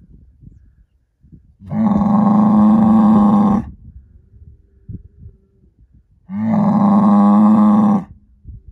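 Black Angus herd bull bellowing: two long, loud calls of about two seconds each, a few seconds apart, each held at a steady low pitch.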